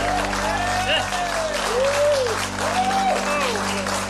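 Audience applauding, with voices calling out over the clapping and a sustained instrumental chord underneath.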